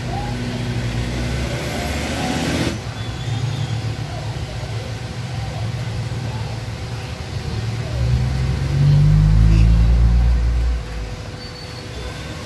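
An engine running, with a low rumble that swells louder about eight seconds in, rises slightly in pitch, then drops away shortly before the end. A short hiss comes about two seconds in.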